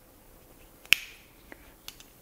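A single sharp click from a folding pocket knife being handled and opened, a little under a second in, followed by two fainter clicks.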